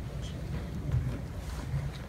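A low, uneven rumble with no speech, in a pause between spoken phrases.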